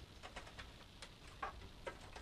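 Faint scattered clicks and rustles of a SATA cable being handled and pushed through a computer case.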